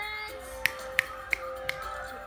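Four sharp finger snaps, about three a second, over steady music with a long held note.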